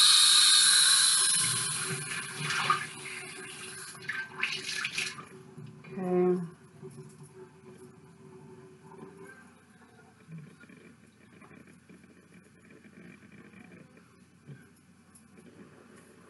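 Bathroom sink tap running hard for the first few seconds while a face is rinsed, a second short gush, then the water is shut off. A brief pitched sound comes about six seconds in, followed by faint rubbing of a washcloth on the face.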